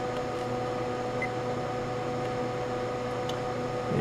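Steady machine hum with two steady tones, from a 1500-watt switching power supply running under a heavy resistive load of about 24 amps.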